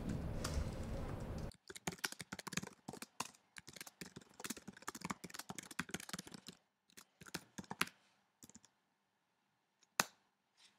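Typing on an Apple laptop keyboard: after a second or so of room noise, a fast run of key clicks for about five seconds, then a few single taps about two seconds later, and then it stops.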